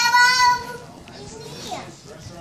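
A small child's high-pitched squeal, held for about two thirds of a second and dipping in pitch at the end, followed by quiet room sound.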